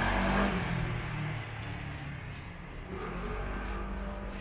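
A motor scooter passing on the street and moving away, its engine loudest at first and fading over the next second or so.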